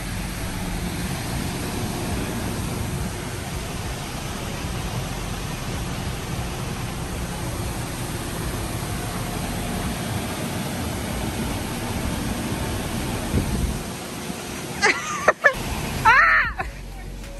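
Steady rushing outdoor background noise with a low rumble, even throughout.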